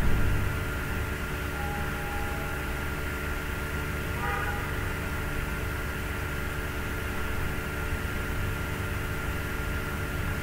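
Steady low background hum with a constant thin high tone over it, with a brief low bump at the very start.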